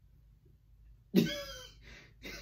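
A man's single loud cough a little over a second in, fading out over about half a second.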